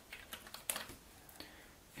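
Cardboard jigsaw puzzle pieces being handled: a few soft, light clicks and taps as pieces are picked from the box and moved on a wooden table, the sharpest click just under a second in.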